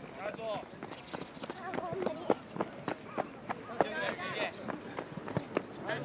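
Distant shouts and calls of youth football players and coaches across the pitch, rising around two-thirds of the way in, over many short sharp clicks and knocks.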